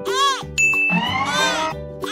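Cartoon sound effects over children's background music: a short high ding about half a second in, and two sweeps that rise and fall in pitch, one at the start and one past the middle.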